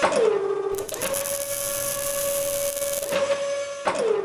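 Robot-arm sound effects: a motor whine that drops in pitch at the start, then a steady machine hum with a loud hiss over it for about two seconds, and another falling whine at the end.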